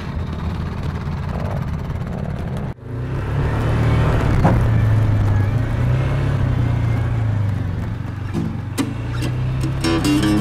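ATV engines running over sand, mixed with background music. About three seconds in the sound cuts suddenly to a louder, steadier low engine drone.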